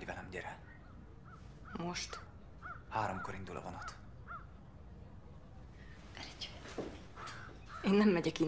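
Film soundtrack: a man and a woman exchanging a few short lines of Hungarian dialogue, with several brief bird calls in the background between the lines.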